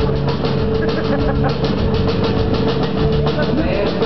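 Indie rock band playing live through a venue PA, recorded from the audience: acoustic guitar, upright bass and keyboard over a drum kit keeping a fast, steady cymbal beat.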